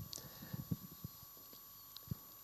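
Faint handling noise on a lectern microphone: a string of short, irregular low bumps and knocks as the mic is held and moved.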